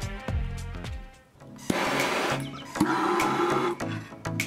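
Background music, with a power driver whirring for about two seconds in the middle as it runs a bolt down into a steel mounting bracket.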